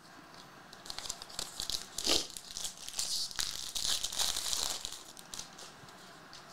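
A foil trading-card pack wrapper being torn open and crinkled. There is a run of crackling with a sharper rip about two seconds in, and it dies down around five seconds.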